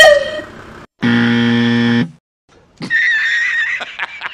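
A short cartoon pop effect, then a flat game-show 'wrong answer' buzzer held for about a second, marking the car wheel as the wrong pick for the truck. Near the end comes a high, wavering squeal.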